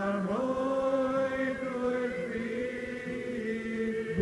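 A slow hymn sung in unison, the voices holding long drawn-out notes that step slowly up and down in pitch.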